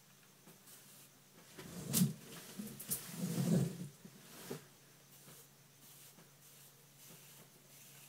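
Handling sounds of a plastic comb being worked through hair: soft rustling with a few sharp clicks about two to three seconds in, the loudest near the start of them.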